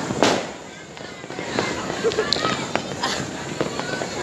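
Fireworks and firecrackers going off on all sides: one loud bang just after the start, then a continual scatter of smaller cracks and pops.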